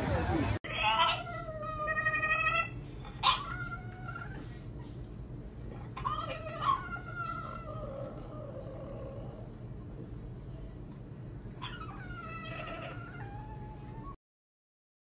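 French bulldog vocalizing in whiny, yowling calls that bend in pitch. There are four calls: a long one of about a second and a half near the start, a short one just after it, one in the middle and one near the end.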